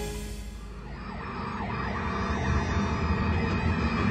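Eerie horror-film score with sliding, wavering high tones that swell in level after a brief dip.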